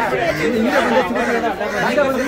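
Several people talking at once, their voices overlapping in loud chatter.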